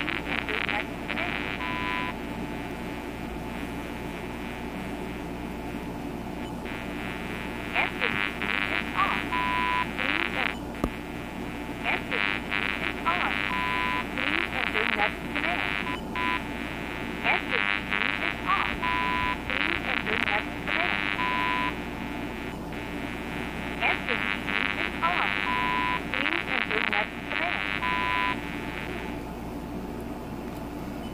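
Static hiss with bursts of crackling heard over a 900 MHz cordless phone handset, a sign of radio interference on the cordless link. A short high beep sounds every few seconds as the answering system waits in remote-access mode.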